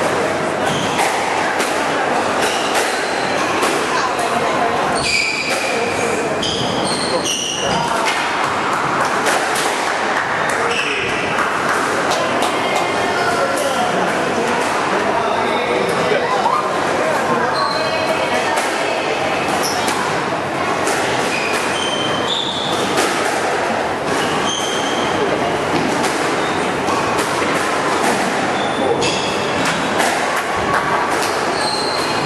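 Squash ball smacking off racket, front wall and wooden floor in scattered knocks, with short high squeaks of court shoes on the wooden floor. Throughout there is a steady background chatter of voices in a large, echoing hall.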